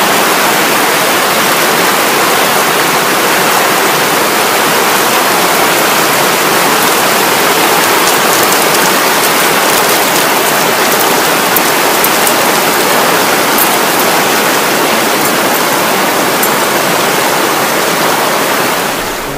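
Trinity River rushing over a shallow gravel riffle: a loud, steady rush of water.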